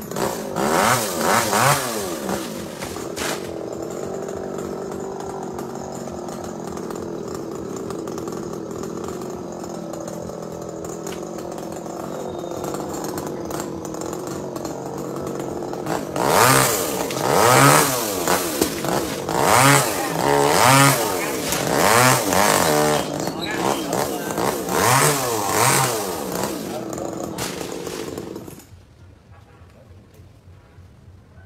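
Chainsaw running: revved briefly, then holding a steady idle for about a dozen seconds, then revved up and down again and again before stopping suddenly near the end.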